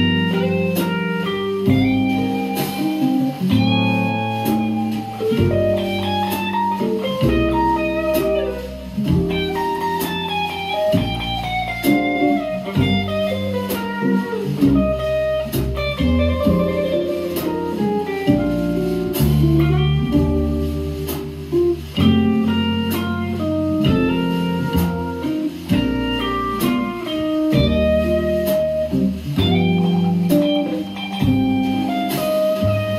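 Telecaster-style electric guitar playing jazz in E-flat, moving between chords and melodic single-note lines without a break.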